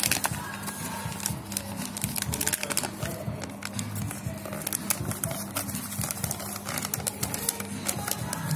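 Paper rustling and crackling in quick, irregular clicks as a kraft paper gift box is worked open by hand, with background music under it.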